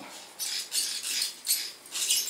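Lizard Red Gun baitcasting reel being cranked to wind braided multifilament line onto its spool, the line drawn off a supply spool braked by the foot: a quick succession of short, high, hissing whirs as the handle turns.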